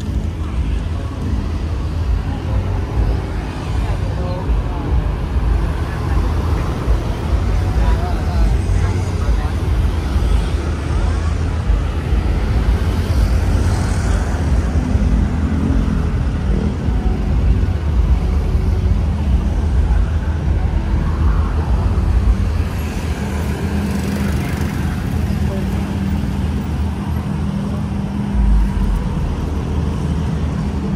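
Steady rumble of road traffic with people chatting around. A low steady drone joins in about two-thirds of the way through.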